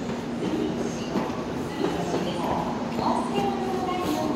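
Electric commuter train at a station platform: a steady hum under continuous station noise, with a brief higher tone in the second half.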